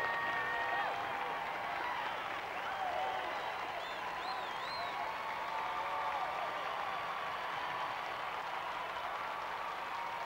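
Concert audience applauding steadily.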